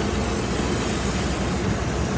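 An automatic car wash running, heard from inside the car's cabin: a steady rushing of water spray and wash machinery over a deep rumble.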